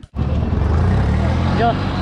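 A steady, loud low engine drone that starts just after a brief drop-out, with a man's voice over it.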